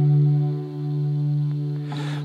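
Alternative rock song in a gap between vocal lines: a sustained, effects-laden electric guitar chord rings steadily. Near the end a swell of noise starts to rise.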